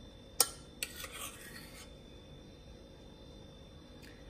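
A metal fork clicks sharply twice against a ceramic plate, about half a second apart, then scrapes briefly as raisins are pushed off onto a crepe.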